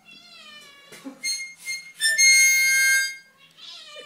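A cat meows with a long call falling in pitch, annoyed by the harmonica. A harmonica then plays a few short notes and a loud held chord in the middle, and the cat meows again near the end.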